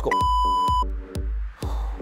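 A single electronic timer beep, a steady tone lasting under a second, sounding at the start of a timed exercise interval. Under it runs electronic background music with a steady beat of about two strokes a second.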